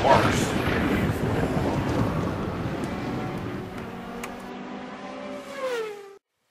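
Intro logo sound effects: a hit at the start opening into a dense wash of noise that slowly fades, with a pitched sound gliding down near the end.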